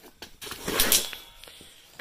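A short rustle of packing material being handled: one noisy burst of about half a second near the middle.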